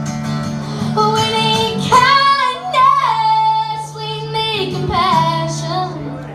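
A young girl's voice singing several long held notes over a strummed acoustic guitar. The guitar plays alone for the first second before the voice comes in, and the voice drops out near the end.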